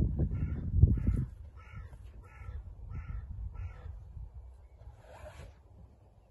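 A low rumbling noise for the first second, then a bird calling: six short calls in an even series about 0.6 s apart, and one more near the end.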